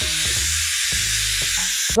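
Handheld steam gun hissing steadily as it blows steam onto old tint film on a car's rear window, heating it so the film can be peeled off without cutting the defroster lines; the hiss cuts off sharply near the end.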